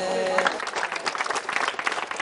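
A group of boys' voices holds a sung note that stops about half a second in, and a crowd of students then claps and applauds.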